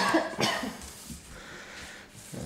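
A person coughing, two quick coughs about half a second apart near the start, picked up by a desk microphone in a room.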